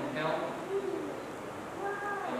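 Speech: a man's low voice speaking slowly in short phrases with pauses, as in the exchange of wedding vows.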